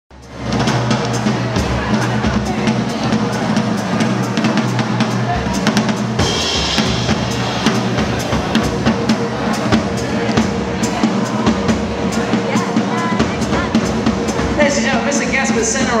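Band music driven by a drum kit, with steady snare and bass-drum strokes under sustained instrument notes and a cymbal crash about six seconds in. Near the end a voice starts to introduce the drummer over the music.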